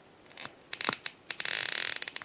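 Stiff plastic leg joints of a NECA Jason Voorhees action figure being flexed by hand: a series of sharp clicks, then a scraping rub near the end. The joints are very tight.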